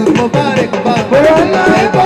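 Balochi dance music: a fast hand-drum rhythm under a bending, sliding melody line.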